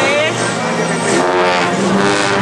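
Procession brass band playing a slow Guatemalan funeral march (marcha fúnebre): held brass chords, easing slightly in loudness about halfway through.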